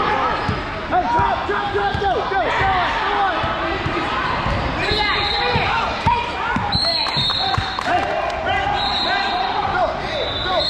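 Basketball game on a hardwood gym floor: a basketball bouncing as it is dribbled, and many short sneaker squeaks from players cutting and stopping, with voices in the hall.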